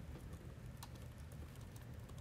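Faint scattered light clicks, one a little under a second in and several more near the end, over a low steady hum.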